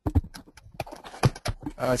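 A rapid, irregular series of sharp clicks and knocks, followed near the end by a man's hesitant "uh".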